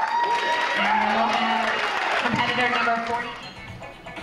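Audience cheering: high whoops rising sharply at the start and held, several voices overlapping, with applause and music underneath; it dies down after about three seconds.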